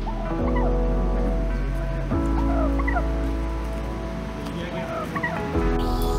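Wild turkey calling, with several short calls scattered through, over background music with held chords.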